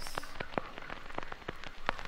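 Irregular vinyl crackle and pops from a spinning record, with the singing paused.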